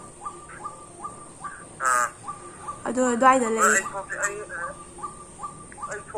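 A bird calling over and over in short falling calls, about two a second, with a woman's voice breaking in about two and three seconds in.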